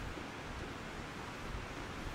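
Steady, soft hiss of outdoor background noise, with no distinct events.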